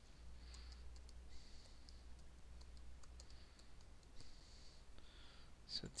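Faint computer keyboard typing and mouse clicks: scattered soft clicks as a component name is typed into a search box, over a low steady hum.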